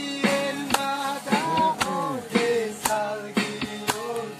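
Acoustic guitar playing with singing, over a sharp, even beat about twice a second.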